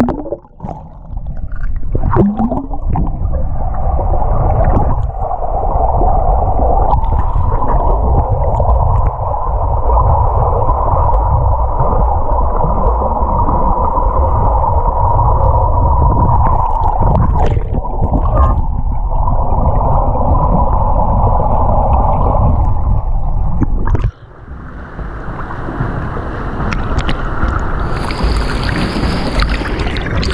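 Muffled underwater rush and churn of pool water as a swimmer flutter-kicks with swim fins, heard through a submerged camera. About 24 seconds in it dips briefly, and near the end the splashing turns brighter and hissier as the water surface breaks.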